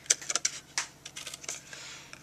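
Scissors cutting through cardstock: a quick, irregular run of snips.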